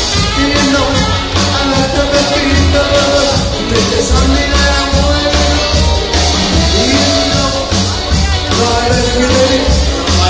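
Live rockabilly band playing: upright bass and drums keep a steady driving beat under electric guitar, with the saxophone raised and playing a melodic line.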